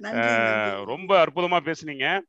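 A man's voice speaking, opening with one long drawn-out syllable held for about a second, then ordinary quick speech.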